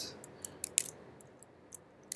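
A few light computer clicks. The two loudest come close together just under a second in, with fainter ones after, over quiet room tone.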